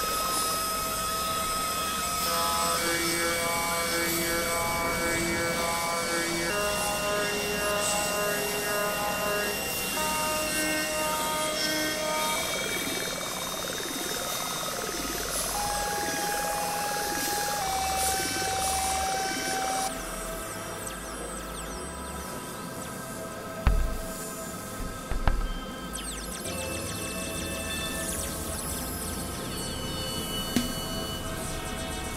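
Experimental electronic synthesizer music. It opens with sequences of short beeping tones at shifting pitches, then swooping tones that rise and fall about once a second. About two-thirds of the way in the texture thins, and two low thuds are heard.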